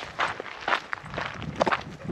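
Footsteps of people walking on a hillside hiking path, several uneven steps a second.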